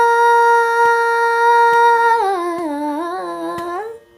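A female voice holds a long, steady note in Carnatic style, then about halfway through slides down in wavering ornamental turns and climbs back to the starting pitch before stopping at the end. The melody is in raga Behag, with a faint steady drone underneath.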